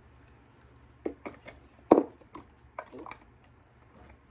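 Plastic body mist bottles knocking and clacking against each other as a hand rummages among them in a storage bench: a string of sharp taps, the loudest about halfway through.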